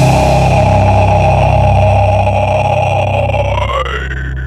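Heavy-metal recording in which a held, distorted electric guitar chord rings out over sustained bass after the full band stops. Near the end one tone slides upward, and the low note steps down.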